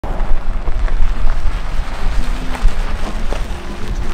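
Heavy wind rumble on the microphone over a Ford Mustang convertible driving across a dirt lot, its engine and tyres crunching on the dirt.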